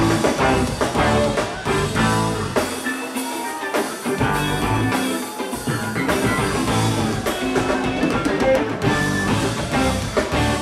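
Live funk band playing: electric guitar, bass, drum kit and organ. The low end drops out for about a second around three seconds in, then the full band comes back.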